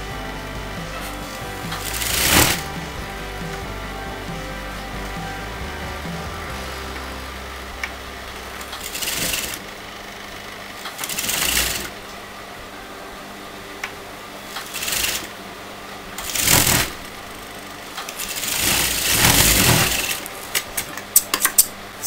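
Sewing machine stitching in several short runs that start and stop, over steady background music.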